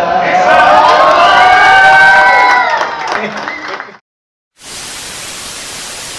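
A group of men singing the last line of a vallenato chorus without accompaniment, holding the final note for about three seconds before it fades amid crowd cheering. After a brief gap, a steady hiss like static runs to the end.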